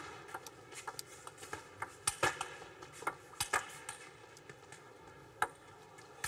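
Table tennis rally: the celluloid ball clicking sharply off the players' bats and the table in an irregular run of hits, a few every second, over a quiet hall background.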